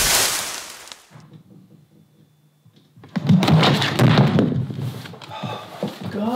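A loud rushing noise that fades away over about a second. After a short lull comes a couple of seconds of clattering knocks and rubbing: handling noise from a camera knocked over onto its side on a wooden counter.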